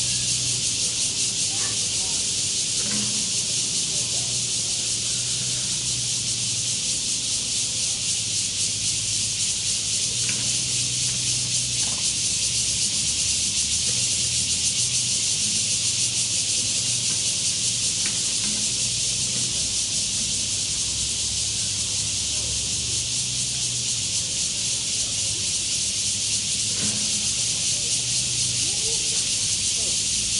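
Dense, steady high-pitched hiss of a cicada chorus in the trees, unbroken throughout, over a low steady hum.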